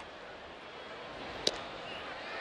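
Faint ballpark crowd murmur, then a single sharp pop about one and a half seconds in: a 93 mph fastball smacking into the catcher's mitt for strike three.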